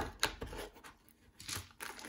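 Handling noise in a cardboard game box: a light knock as a deck of sleeved cards is set into the insert, then plastic bags of plastic game pieces crinkling and rustling in short bursts.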